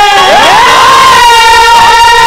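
A male folk singer's voice, loud through a stage microphone and PA, sliding up into a long, high held note.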